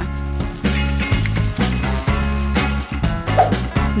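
Dried popcorn kernels poured into crumpled aluminium-foil cups, a dry rattle for about three seconds that then stops, over background music.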